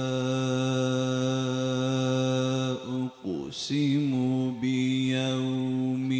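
A man reciting the Qur'an in melodic chanted style into a microphone: one long held low note for about three seconds, a short break with a sharp hissing consonant, then the voice resumes with held notes that bend and waver.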